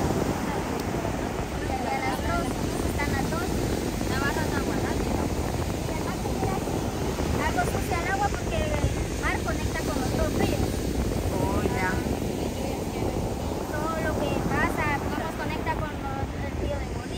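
Steady rush of surf breaking on the beach, with wind buffeting the microphone, under a woman's voice talking.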